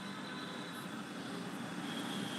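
Steady hum and hiss of room or street noise picked up by a participant's open microphone on a video call, with a faint thin high whine over it.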